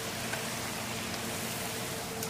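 Battered fish frying in a deep fryer: the hot oil sizzles steadily, with a faint steady hum underneath.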